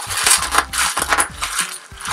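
Bubble wrap squeezed and twisted in the hands, popping in a rapid, irregular run of sharp pops and crackles.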